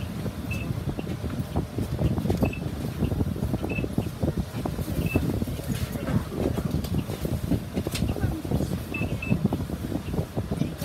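Bus farebox beeping as boarding passengers pay: six short high beeps at irregular intervals, two close together near the end, over the bus's idling engine and scattered knocks and shuffling.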